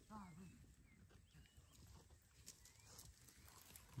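Near silence of open farmland: a distant voice is heard faintly and briefly at the start, with a few faint bird chirps.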